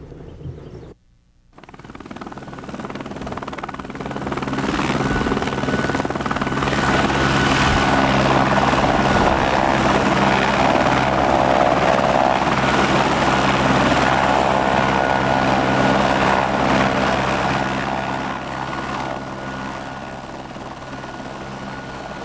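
A helicopter flying in: its rotor and engine drone grows loud over the first few seconds after a brief gap, holds steady with a thin high whine, and eases off a little near the end.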